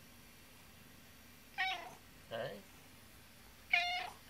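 A house cat meows twice, short and sharp, about two seconds apart, the second one the loudest, while being petted.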